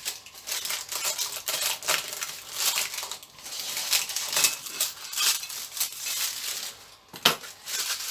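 Scissors snipping and baking paper crinkling as the excess paper around a cast iron pot's lid is trimmed away, a rapid run of small crackles and clicks, with one sharp click near the end.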